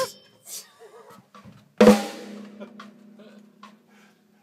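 One hard hit on a DrumCraft acrylic drum kit about two seconds in, the drum ringing on with a steady low tone for about two seconds as it fades. A few faint stick taps come before and after it.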